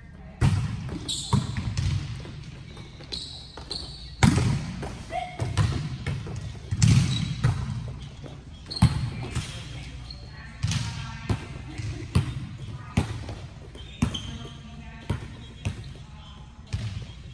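Volleyball being struck and bouncing on a tiled gym court: a dozen or more sharp smacks at irregular intervals, echoing in the large hall, the loudest about half a second in and a little after four seconds in, with short high sneaker squeaks between them.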